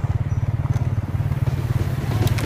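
Motorcycle engine running at a steady cruising speed on a dirt road, a fast, even low pulsing, heard from on board the moving bike.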